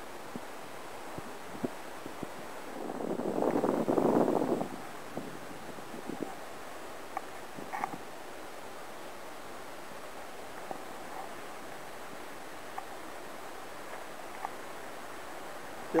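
Faint, steady outdoor background on a rocky seashore, with a louder rushing noise lasting about two seconds, about three seconds in, and a few light clicks.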